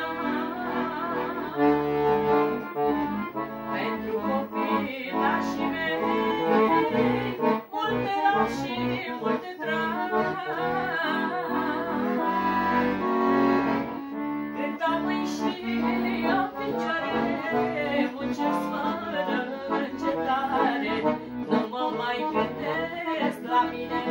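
Two accordions playing a tune together, with a woman singing along.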